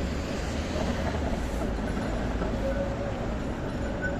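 Tram running across a street junction on its rails: a steady rumble, with a thin tone that comes and goes near the end.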